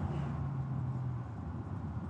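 A vehicle driving on a paved road: steady low engine hum and tyre noise.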